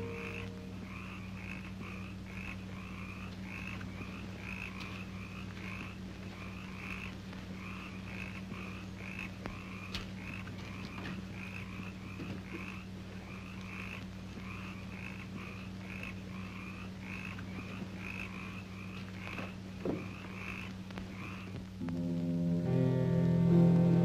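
Frogs croaking at night in a steady, even rhythm, over a low steady hum from the old film soundtrack.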